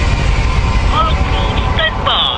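Large truck driving past close by on the road: a loud, steady low rumble of engine and tyres.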